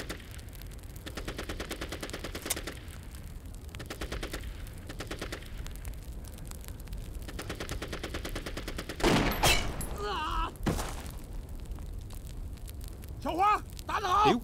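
Rapid battlefield gunfire and machine-gun fire crackling steadily in the distance. About nine seconds in a louder burst comes with a shout, and a single sharp rifle shot cracks out at about ten and a half seconds.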